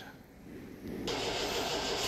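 Near quiet for about a second, then a steady engine noise cuts in abruptly: an MGB's engine running somewhere across the hall.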